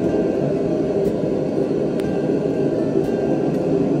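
Steady low rumbling noise of a busy kitchen, with a sharp clink of metal utensils about two seconds in.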